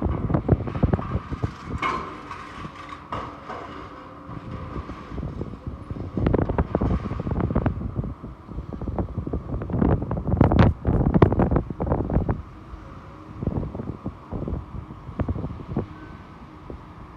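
Excavator with a demolition shear tearing into a steel conveyor gallery: irregular clanks, crunches and creaks of metal over the running machine, loudest in two spells about six seconds in and again from about ten to twelve seconds in.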